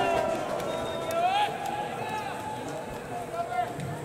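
Voices calling out across a baseball stadium: drawn-out calls that rise and fall in pitch, over the steady murmur of the ballpark.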